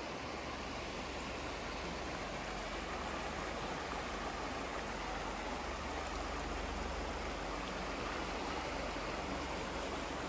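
Steady rush of a small mountain creek running, with a low rumble underneath throughout.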